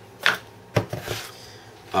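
Two sharp wooden knocks about half a second apart as pieces of a small broken wooden boat stand are handled and set on a wooden tabletop.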